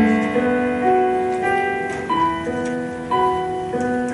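A hymn tune played on a keyboard, chords held and changing at a slow, even pace.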